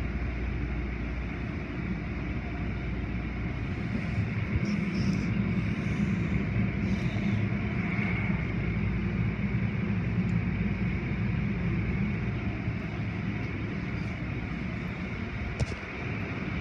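Automatic tunnel car wash machinery running: a steady rumble of spinning cloth wash brushes and curtains, their motors and water spray, a little louder from about four seconds in.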